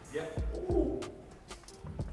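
A person's short, low hummed murmur of approval, less than a second long, in a quiet shop.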